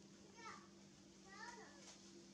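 Two faint, high-pitched squealing calls from an infant long-tailed macaque, a short one about half a second in and a longer, arching one about a second and a half in.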